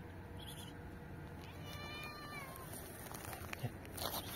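A cat meowing once, a single call of about a second near the middle, dipping slightly in pitch at its end.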